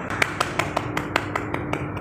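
A person keeping a quick, even beat with her hands: sharp clicks about five a second, over a faint steady tone.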